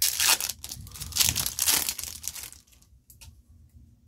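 A foil trading-card pack wrapper being torn open at its crimped seal and crinkled in the hands: a run of crackling tears for about two and a half seconds, then it goes quiet apart from a few faint ticks.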